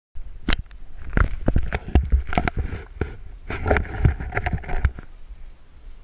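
An irregular run of about fifteen sharp knocks and bumps over a low rumble, stopping about five seconds in.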